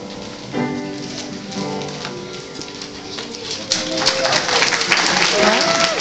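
Young children's choir singing with musical accompaniment as a song ends; a little over halfway through, audience applause breaks out and grows louder, with children's voices calling over it.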